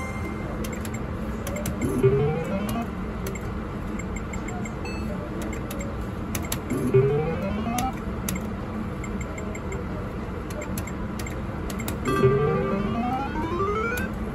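IGT video poker machine sound effects: three rising electronic swoops about five seconds apart, one with each hand played, and scattered short clicks. Near the end a run of quick stepped beeps counts up a small win, all over steady casino background.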